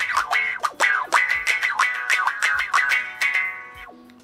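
Electric guitar played clean through the TASCAM DP-24/32's auto-wah effect: quick picked strums, several a second, with the filter sweeping on each attack. It fades toward the end.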